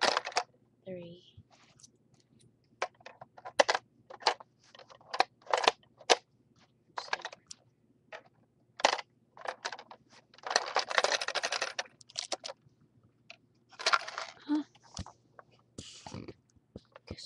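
Irregular sharp clicks and knocks from the LEGO gumball machine and its gumballs being handled, with a denser rattle lasting about a second and a half about ten seconds in.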